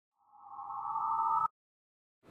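Intro logo sound effect: a steady tone that swells up in loudness and then cuts off suddenly about one and a half seconds in.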